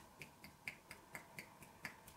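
Fingertips tapping lightly and rhythmically on a person's head during a head massage, faint sharp taps at about four a second.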